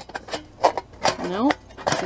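Thin titanium camping pot, pan and lid clinking and knocking together as they are stacked, about half a dozen light metal clicks. A short voiced sound comes about halfway through.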